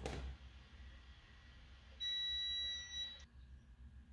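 Handheld stud and metal finder in metal mode giving one steady, high-pitched beep about two seconds in, lasting about a second: its signal that it has picked up metal under the wall surface.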